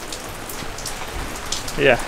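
Steady rain falling, an even hiss with scattered drops.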